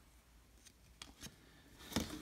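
Paper-thin baseball cards being flipped through by hand: a few faint, light ticks and rustles of card sliding on card, the loudest just before the end.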